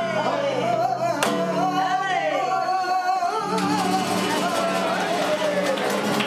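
Flamenco fandango: a cantaor sings a long, wavering melismatic line over flamenco guitar accompaniment. A single sharp clap sounds about a second in.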